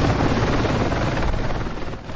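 Military transport helicopter running on the pad, with a steady, dense rotor-and-turbine noise that eases slightly near the end.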